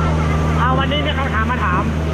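A boat engine running with a steady low drone under a man's talking.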